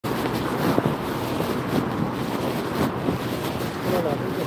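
Wind buffeting a phone's microphone outdoors: a rushing noise that swells and fades in uneven gusts.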